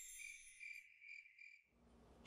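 Faint cricket chirping, a steady high pulsing trill, under a high chime-like musical shimmer. Both fade out about three-quarters of the way in, leaving near silence.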